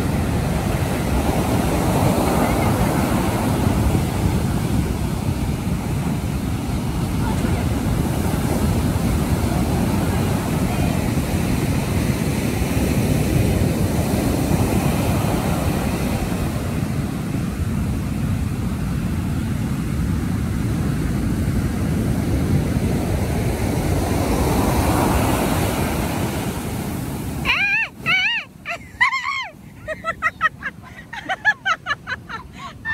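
Heavy ocean surf breaking and washing up the beach: a loud, continuous rush that swells and eases with each set of waves. Near the end the rush drops away suddenly and voices are heard.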